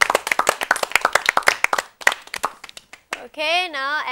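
A small group of people clapping their hands, dense at first, then thinning out and stopping about three seconds in.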